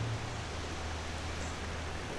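Steady rushing of a creek's flowing water, with a low steady hum underneath.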